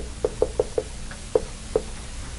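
Dry-erase marker tapping and knocking against a whiteboard as symbols are written: a quick run of about five short taps in the first second, then two more spaced-out taps.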